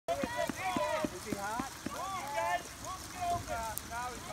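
Several high-pitched voices shouting and calling out at a distance, a string of short cries that rise and fall in pitch.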